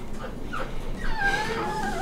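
A puppy whining: a short whimper, then a thin, wavering high whine from about halfway through.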